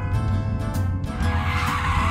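Background music, with a car tyre-skid sound effect laid over it, starting about a second in.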